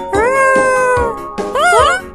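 A high-pitched cartoon character's wordless vocalisation: a long 'ooh' that rises, then slowly falls, followed near the end by a short call that rises and falls, over upbeat children's background music with a steady beat.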